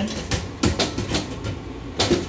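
A kitchen cabinet drawer being pushed into its opening, knocking and rattling irregularly several times as it rides onto its wheeled slides.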